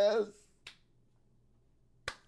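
A man's drawn-out vocal cry fading out just after the start, then one short, sharp click a little over half a second in.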